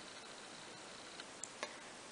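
Quiet room tone with a faint hiss and a thin high whine, broken by a few small, faint clicks in the second half.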